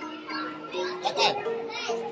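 Children's voices chattering over background music with a simple melody of held notes.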